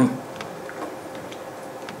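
Several faint, irregular clicks of laptop keys over a steady room hum, as the presenter's slides are advanced.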